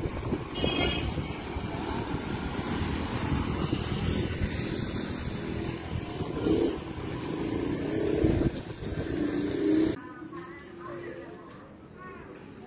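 Outdoor street noise with a rough rumble of wind on the microphone and traffic, and muffled voices. About two seconds from the end it cuts to a quieter scene with a steady, high cricket chirping.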